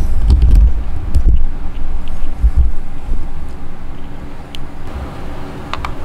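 A loud, uneven low rumble, heaviest in the first second and a half and briefly again a little later, with a few faint clicks.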